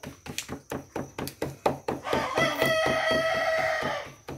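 Hands patting black-corn masa into tortillas, a quick, even slapping of about four pats a second. About halfway through, a long call at one steady pitch starts over it and is held for about two seconds, louder than the patting.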